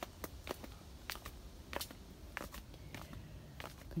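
Footsteps and leafy branches brushing past a handheld phone: a scatter of faint, irregular clicks and crackles over a low handling rumble.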